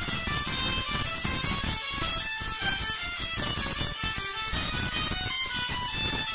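Tesla coil firing a spark arc into a hand-held metal rod, a steady harsh buzz with crackling.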